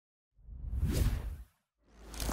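Whoosh sound effects in a motion-graphics intro. One whoosh swells from about a third of a second in to its loudest around the middle, then dies away. A second whoosh begins just before the end.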